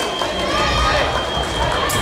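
Fencing hall ambience: voices and calls echoing across the hall over the thud of sabre fencers' footwork on the pistes.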